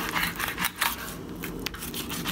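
A chef's knife scraping along a branzino's backbone as the fillet is cut away, a rapid, irregular scratchy ticking of the blade over the bones. The sound on the bone is the sign that the blade is riding right on the backbone, as it should.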